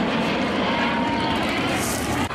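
A BAE Hawk T1 jet of the Red Arrows flying past, its engine giving a steady, loud jet noise.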